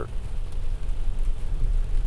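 Steady low rumble of road and engine noise inside the cabin of a moving car.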